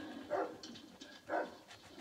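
A dog barking twice, about a second apart, played through a television's speakers in the room.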